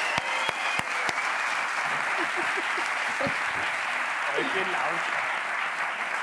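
Studio audience applauding steadily, with a few voices mixed in; the applause dies away near the end.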